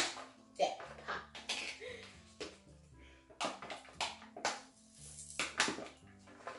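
A Pringles can being opened by hand: a run of sharp crinkles and clicks, the loudest right at the start, as the plastic lid comes off and the foil seal is peeled, over background music with steady low notes.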